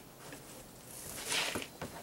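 Compressed-air skewer gun being reloaded: faint handling clicks, then a short hiss of air about a second in.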